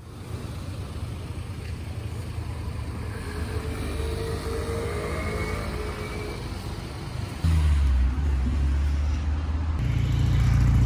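Low, steady engine and road rumble of a city bus. It gets suddenly louder and deeper about seven and a half seconds in.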